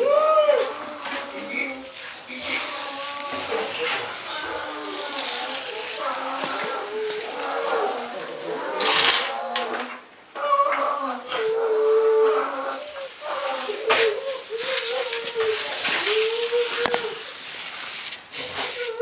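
Brown bear cub crying almost without pause, in drawn-out, wavering calls that rise and fall in pitch, with a short break about ten seconds in.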